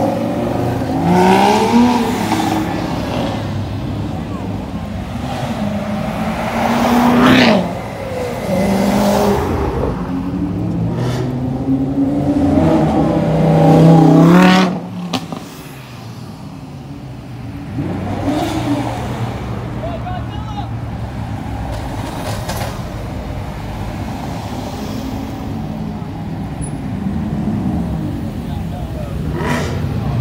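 Sports cars accelerating away from a standing start one after another, each engine revving up in rising runs. The loudest run, about 14 seconds in, cuts off suddenly. After it, engines idle and roll by more quietly under crowd voices.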